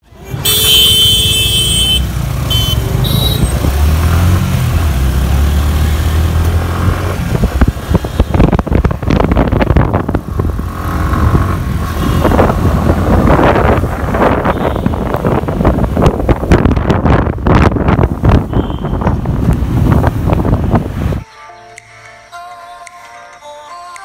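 Motorcycle on the move: a loud, steady low rumble of engine and road with heavy wind buffeting on the microphone, and a few high tones in the first three seconds. It cuts off suddenly near the end.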